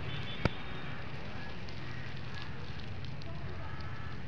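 Steady outdoor ambience with a low, rumbling wind noise on the microphone, broken by one sharp click about half a second in.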